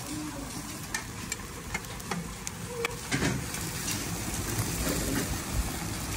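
Eggplant kebab cooking in lidded black pans over hot charcoal: a steady sizzle with scattered sharp crackles and pops.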